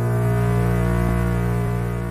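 Synthesizer pad holding a steady chord over a low bass drone, the instrumental intro of a hip-hop beat before the drums come in.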